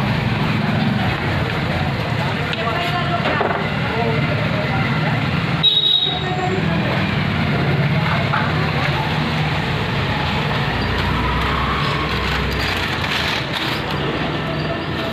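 Street noise of traffic with indistinct background voices, and a sharp knock about six seconds in.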